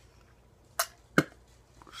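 Two short, sharp clicks close to the microphone, about half a second apart, the second one louder.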